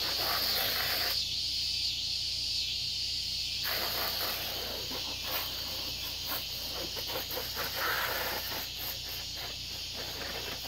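Garden hose spray hissing and spattering against an ATV's plastic bodywork and tyres, on and off.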